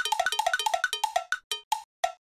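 Edited-in sound effect over a title card: a quick run of about fifteen short pitched notes, each dipping slightly in pitch. They start fast, then slow down and fade out toward the end.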